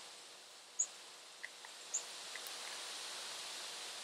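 Quiet outdoor ambience: a steady high hiss with a few brief high chirps, the loudest about a second in.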